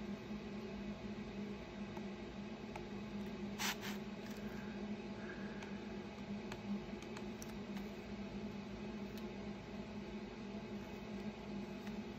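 Small, faint clicks and ticks of hand work as a weeding tool picks strips of transfer-tape masking off a laser-scored plywood round, over a steady low hum. One sharper click comes a little under four seconds in.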